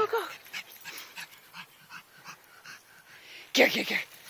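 Great Danes breathing hard and moving about close by, with faint quick huffs about two or three a second.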